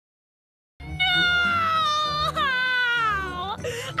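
Silence for almost a second, then a cartoon girl's voice wails in one long drawn-out cry, wavering in pitch, before breaking into pleading speech near the end.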